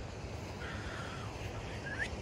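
Wind rumbling on the microphone, with a faint high call in the middle and a short rising whistle-like tone at the end.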